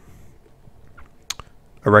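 A few faint, short clicks in a quiet pause, the sharpest a little over a second in.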